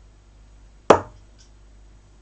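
A 24 g steel-tip dart striking a bristle dartboard once, about a second in: a single sharp thud that dies away quickly, followed by a couple of faint ticks.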